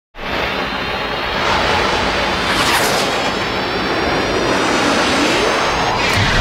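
Logo-intro sound effects: a loud rushing whoosh with sweeping pitch glides and a faint high tone rising slowly beneath it, building to a hit at the very end.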